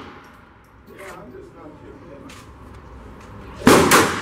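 Phoenix HP22A .22 LR pistol fired twice in quick succession near the end, each shot ringing out with a long echo in the indoor range. Before that, the echo of the previous shots dies away.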